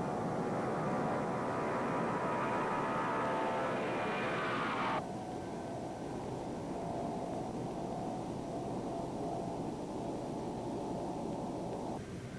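Lockheed L-1011 TriStar jet airliner taking off, its Rolls-Royce RB211 turbofans running at high power with a steady roar and a high whine. About five seconds in, the sound cuts off suddenly to a quieter, duller rushing noise of the airliner in flight.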